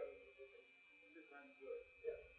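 Faint, indistinct speech in a room, with a steady thin high-pitched tone underneath.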